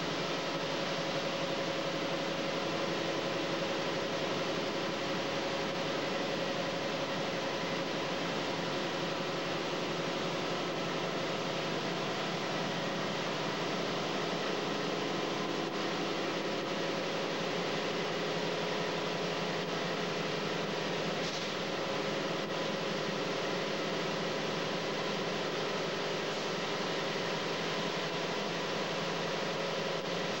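Mark VII Aquajet GT-98 touchless car wash machine running steadily: a constant rushing noise with a steady motor whine underneath.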